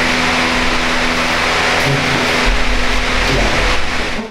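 Steady loud rushing background noise with a low hum underneath, like room ventilation or fan noise, with no speech.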